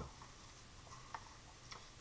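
Near silence: room tone with a faint click about a second in and another weaker one shortly after.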